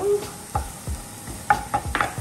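Wooden spatula stirring minced onion, garlic and ginger in a frying pan, knocking against the pan several times, mostly in the second half, over the sizzle of the aromatics in the oil.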